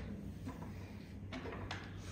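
Faint handling noise of small parts being set up, with one light click about a second and a third in, over a steady low hum.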